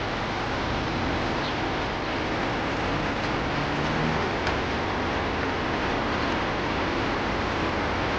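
Steady hiss-like background noise at an even level, with a few faint clicks.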